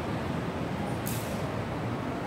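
Steady low rumble of outdoor city traffic, with a short hiss about a second in.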